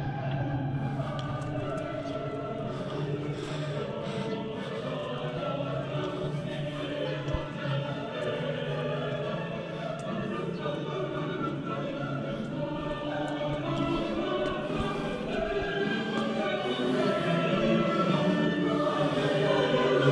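Choral music: a choir singing sustained, overlapping chords, growing louder toward the end.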